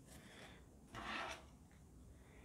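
Tarot cards sliding against each other as the deck is handled: one soft, brief rub about a second in, over quiet room tone.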